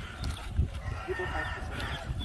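A rooster crowing faintly: one drawn-out call through the second half.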